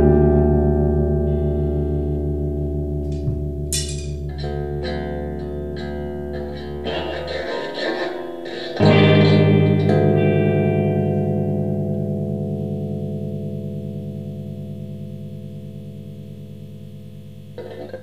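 Electric guitar chords left to ring and slowly fade away, with a few quieter picked notes in between. About nine seconds in, a fresh chord is struck and rings down slowly in its turn.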